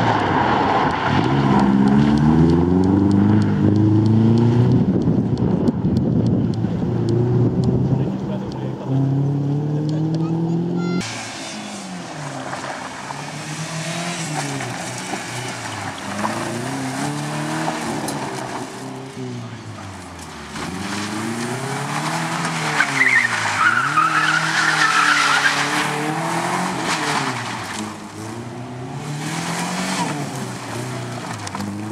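Subaru Impreza rally car's flat-four engine revving hard on a gravel stage. For the first ten seconds or so it is close and loud, with the pitch climbing again and again through the gears. After a sudden cut it sounds farther off, the revs rising and falling over and over through the corners, with the hiss of sliding tyres and flung gravel.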